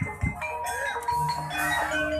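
Javanese gamelan accompaniment for an ebeg trance dance: tuned metal or bamboo mallet percussion playing a melody of ringing notes, with a high shimmering hiss from about half a second in.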